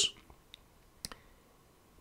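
Near-silent room tone with two faint clicks, one about half a second in and one about a second in.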